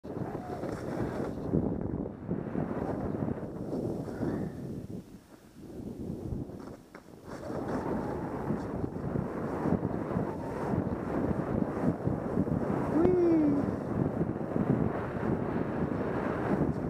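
Wind rushing over a helmet camera's microphone during a downhill run on skis, mixed with the hiss of skis through snow; it drops away for a couple of seconds in the middle, then builds again.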